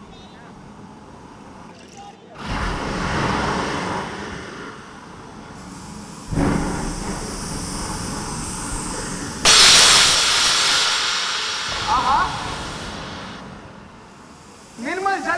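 Stage sound effect of rushing, surging water: a rumbling swell comes in about two seconds in, a second swell about six seconds in, and a loud hissing rush near ten seconds that slowly dies away.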